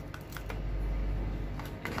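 A handful of light clicks and taps from handling a plastic-and-metal power bank and its USB cable, over a steady low hum.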